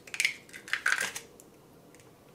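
An egg's shell being pulled apart over a glass bowl, crackling, and the egg dropping into the bowl with a wet plop. The sounds come as a few short bursts in the first second or so.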